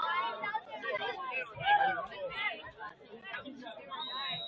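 Indistinct chatter of several people talking at once, their voices overlapping with no clear words.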